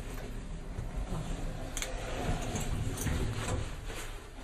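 Inside a hotel elevator cabin during the ride: a faint low hum with a few soft clicks.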